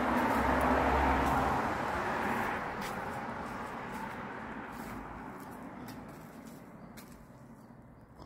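A vehicle driving past on the street: tyre and engine noise at its loudest about a second in, then fading steadily as it moves away.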